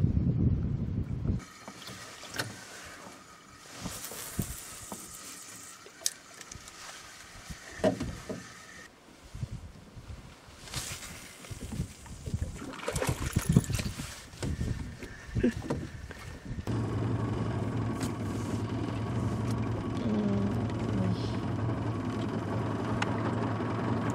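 Wind rumble on the microphone at first, then scattered knocks and handling noises in an aluminium fishing boat. About two-thirds of the way through, a boat motor starts up and runs with a steady low drone.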